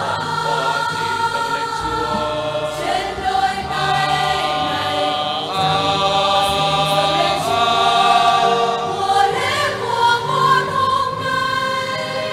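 A choir of mostly men's voices singing a Vietnamese Catholic offertory hymn in long held notes.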